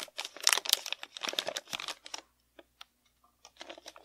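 Thin plastic piping bag and plastic cup crinkling and crackling as the bag's edges are folded down over the cup's rim. The crinkling is dense for about two seconds, then thins out to a few scattered ticks before picking up again near the end.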